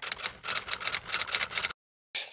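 Typewriter key-strike sound effect: a quick run of sharp clicks, about eight a second, that cuts off suddenly near the end.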